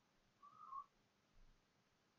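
Near silence with faint hiss, broken by one faint, short high tone about half a second in.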